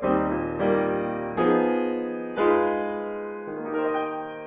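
Solo grand piano playing a slow jazz ballad: full chords struck about once a second, each left to ring and fade before the next.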